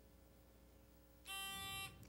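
Near silence, then about a second and a quarter in a steady electronic quiz-buzzer tone sounds for a little over half a second: a contestant buzzing in to answer.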